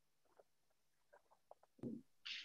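Near silence: room tone with a few faint small clicks and rustles, and a short soft sound near the end.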